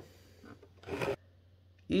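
A brief scrape of cardboard rubbing against cardboard about a second in, from the graphics card's retail box being handled and closed.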